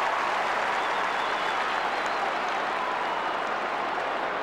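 Large football stadium crowd cheering and clapping steadily, a continuous roar of many voices, in response to a strong mark.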